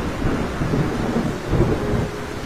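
Heavy rain falling with low rumbles of thunder, a storm sound effect; the rumble swells again about a second and a half in.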